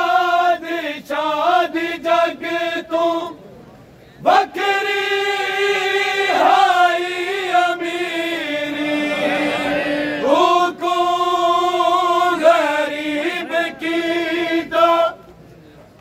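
A group of men chanting a Punjabi noha, a Shia mourning lament, in unison, holding long notes. The singing breaks off twice for a breath, about three seconds in and just before the end.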